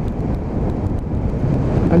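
Steady wind rush on the microphone of a BMW F800 rider, over the bike's parallel-twin engine and tyre noise at an even cruising speed.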